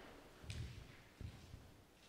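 A few faint, soft footsteps, with a brief rustle at the first step about half a second in.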